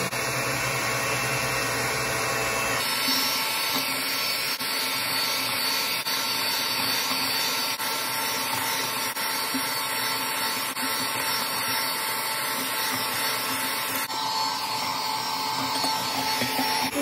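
Electric hand mixer running steadily, its beaters whisking eggs and sugar in a glass bowl. The sound of the motor changes abruptly about three seconds in.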